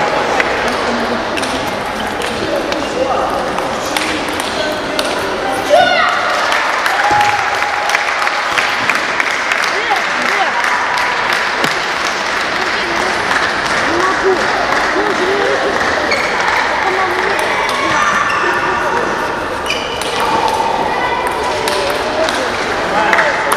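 Table tennis ball clicking off the paddles and the table in rallies, with a louder knock about six seconds in. Under it runs the steady murmur of spectators talking in the hall.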